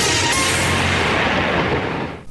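A boom-like crash hit in the show's orchestral theme music. It sets in suddenly and rings out, fading over about two seconds with the high end dying away first.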